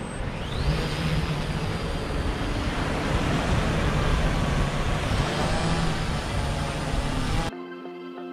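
Small quadcopter drone lifting off from the sand and hovering overhead. Its propellers give a steady buzz, and a motor whine rises in pitch in the first second as they spin up. The sound cuts off suddenly near the end.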